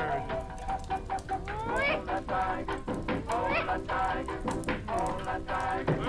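Soundtrack of a 1930s black-and-white cartoon: band music with gliding notes, under many short clicks and the hiss and crackle of an old film soundtrack.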